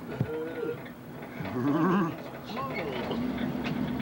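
Wordless vocal sounds from people's voices: a few short pitched calls and exclamations. A steady low hum joins about three seconds in.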